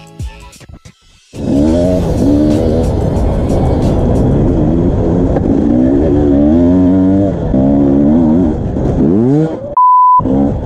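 Soft music, then about a second in a dirt bike engine cuts in loud and close, its pitch rising and falling again and again with the throttle. A brief steady beep near the end.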